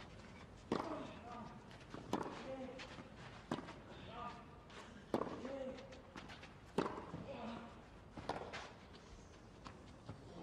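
Quiet tennis-ball knocks on a clay court, sharp and evenly spaced about every second and a half, each with a short ringing tail, over faint background voices.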